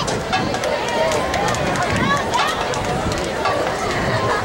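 Indistinct chatter of spectators in the stands, a babble of overlapping voices with scattered clicks and knocks.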